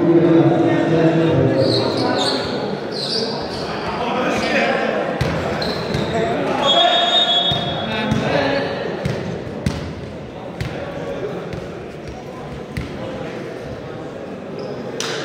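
Volleyball match sounds in an echoing sports hall: players and spectators shouting, a brief referee's whistle blast about seven seconds in, and sharp smacks of the ball being hit or landing, the loudest near ten seconds.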